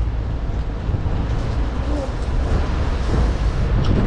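Steady low outdoor rumble, wind buffeting the microphone over the noise of street traffic, with faint voices in the background.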